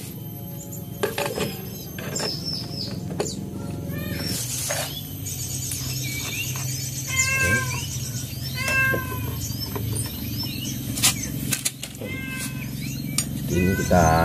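A cat meowing three times, in the middle and near the end, over scattered metal clinks as the CVT drive pulley parts are fitted back onto the scooter's shaft.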